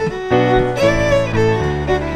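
Live dance band music: a fiddle playing a fast old-time dance tune over a chordal accompaniment with a steady pulse of bass notes.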